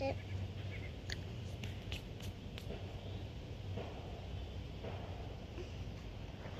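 Quiet outdoor background: a steady low hum with a handful of short, faint high ticks in the first half.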